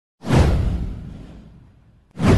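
Motion-graphics intro sound effect: a whoosh with a heavy low end that starts suddenly, sweeps down in pitch and fades out over about a second and a half.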